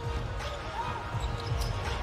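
Basketball being dribbled on a hardwood court, a run of repeated bounces.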